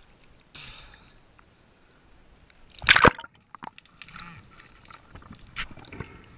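Seawater sloshing and splashing around the camera at the surface, with one loud, short splash about three seconds in.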